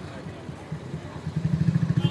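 Motorcycle engine running with a rapid low pulsing, getting louder about a second and a half in.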